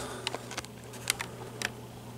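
A few faint, scattered sharp clicks over a low steady hum.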